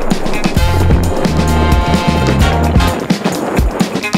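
Soundtrack music with a steady beat and a deep bass line.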